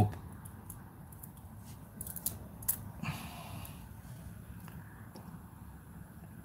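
Hot air rework gun blowing steadily and softly over a surface-mount chip while it ramps up to temperature, with a few faint clicks around the middle.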